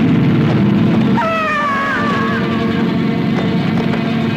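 A high, wavering wail that starts a little over a second in and slides downward in pitch for about a second, over a steady low background of soundtrack music.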